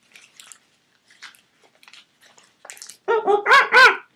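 Faint rustling as a rubber mask is pulled on, then a quick run of about five loud, dog-like yelping barks in the last second.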